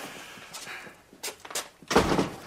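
Footsteps and movement, then a heavy thud near the end as a door shuts.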